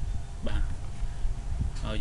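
Speech only: a person's voice says two short words, with a steady low hum beneath.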